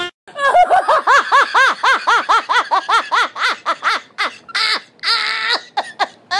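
High-pitched laughter: a rapid run of 'ha' syllables, about four a second, each rising and falling in pitch, ending in a few longer drawn-out notes.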